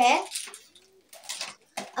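A girl's voice speaking at the start and again near the end, with a quiet pause between that holds a brief faint low tone.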